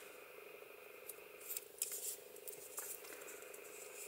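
Faint rustling and a few light clicks of a 2 mm crochet hook working yarn through stitches, over a steady low hum.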